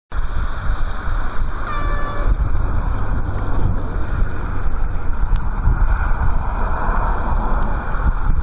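Strong wind buffeting and rumbling on the microphone over a steady rushing noise, with a short horn toot about two seconds in.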